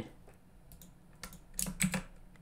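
Low room tone, then about four light, quick clicks in the second half from working a computer's keyboard and mouse.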